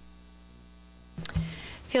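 Steady electrical mains hum from the meeting room's microphone and sound system. About a second in there is a sharp click, and a woman's voice starts near the end.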